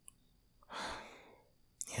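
A man's sigh close to the microphone, a breathy exhale of under a second that fades out, after a faint click at the start. Near the end his voice starts again.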